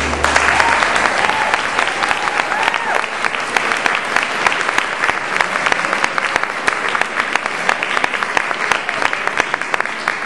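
Audience applauding steadily, with a few short whistled glides in the first three seconds.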